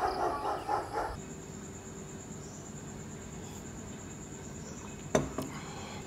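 A rooster's crow trails off in the first second. Then a steady high-pitched insect trill runs on, with a single sharp knock about five seconds in.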